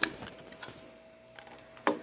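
Tape being pressed down by hand onto a screen-printing screen: a sharp click at the start, then a short rustle near the end.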